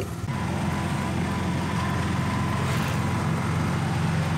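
Steady engine and road noise heard from inside the cab of a moving vehicle, a low even drone.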